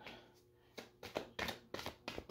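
Tarot cards being shuffled by hand: a quick run of short, sharp card snaps and slaps, starting a little under a second in.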